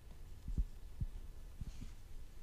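A few faint, soft low thumps over a quiet low hum: one about half a second in, one at about a second, and two close together near the end.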